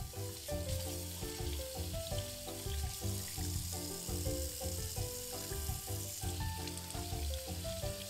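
Tap water running into a sink and splashing over a taro (dasheen) corm as it is rinsed by hand. Background music with a steady beat plays throughout.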